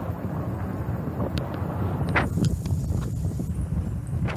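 Bicycle rolling along a paved path: a steady low rumble from the tyres, with a run of sharp clicks and rattles from bumps in the paving starting about two seconds in.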